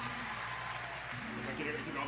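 Indistinct voices in a studio. Talking starts up clearly about a second in.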